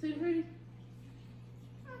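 A brief high-pitched vocal sound lasting under half a second, like a short whine or meow, then a quiet "uh-huh" near the end, over a steady low hum.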